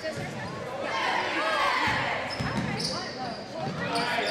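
A basketball bouncing on a hardwood gym floor, with a few low thuds, amid players' and spectators' voices echoing in a large gym.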